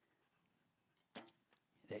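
Near silence, broken about a second in by one short sharp sound of a recurve bow loosing an arrow.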